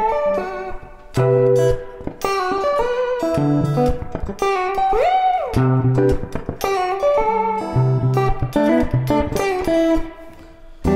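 Ibanez electric guitar playing a fast tapping lick: quick runs of notes broken up by repeated low notes, with a very fast, short vibrato meant to imitate an erhu. About halfway through, one note bends up and comes back down.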